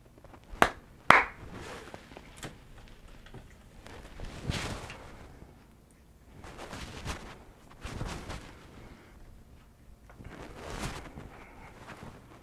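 Handling noise of a video camera being picked up and set lower: two sharp clicks about half a second apart near the start, the loudest sounds, then scattered light knocks and rustling of handling and movement.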